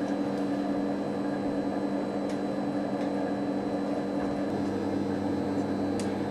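Steady hum and fan noise of a running Elliott 803 computer installation: a constant low drone with an even hiss over it.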